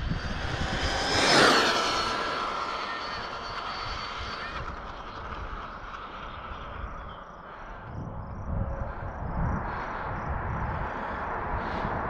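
A Traxxas XO-1 RC car's brushless electric motor whines and its tyres hiss as it passes at high speed. The sound is loudest about a second and a half in, with a slight drop in pitch as it goes by, and the high whine cuts off suddenly at about four and a half seconds. Near the end, the road noise of an approaching real car grows louder.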